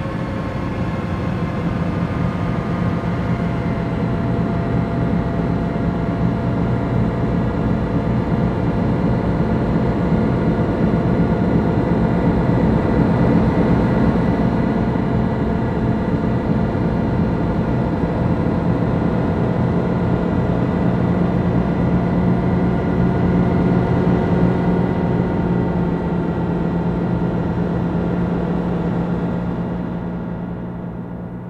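Psychedelic noise-music drone: a thick, steady wash of many sustained tones over a heavy low rumble. It swells slightly at first and begins to fade near the end.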